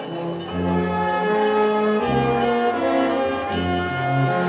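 Slow brass band music: a melody of long held notes over a low bass line.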